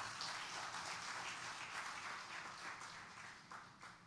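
Congregation applauding, faint, dying away just before the end.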